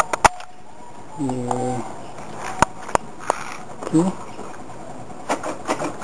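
The ignition key switch of a Yamaha T135 moped being turned, giving a few sharp mechanical clicks in the middle of the stretch. A few more clicks come at the start.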